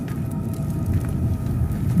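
A steady low rumble, with faint held tones above it.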